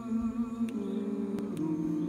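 A small group of unaccompanied voices singing in harmony, holding sustained chords that change pitch twice, about two-thirds of a second in and again about a second and a half in.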